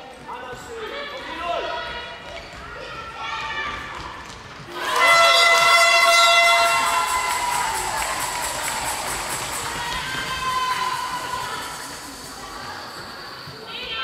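Indoor handball game with shouting voices and ball bounces on a hall floor. About five seconds in comes a sudden, loud, held high-pitched outburst from spectators, which fades away over the next several seconds.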